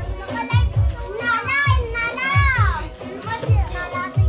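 Music playing with a steady bass beat just under twice a second, and children's voices over it, most prominent in the middle.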